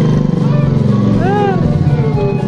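Small motorcycle engine running as it rides past and away, a low steady drone.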